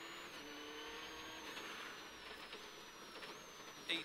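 Subaru Impreza rally car's flat-four engine and tyre noise on wet tarmac, heard from inside the cabin, as a steady mix with a faint high whine slowly falling in pitch.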